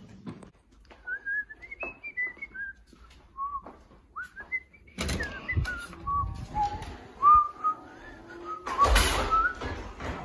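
A person whistling a tune, one clear note at a time moving up and down. Handling and rustling noise comes in about halfway and again near the end, the loudest of it shortly before the end.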